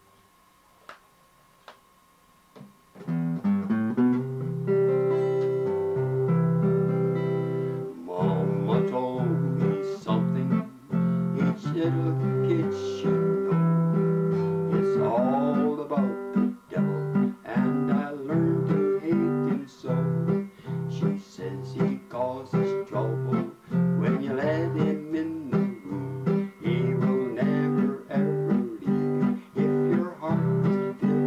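After a few seconds of near silence, an acoustic guitar starts strumming with a harmonica held in a neck rack. From about eight seconds in, an elderly man sings to his own guitar accompaniment.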